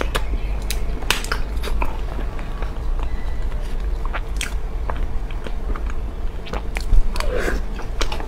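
Close-miked wet, sticky mouth sounds of eating thick chocolate lava cake, with sharp clicks of a metal spoon against the plastic tub throughout. A brief throat sound comes about seven seconds in.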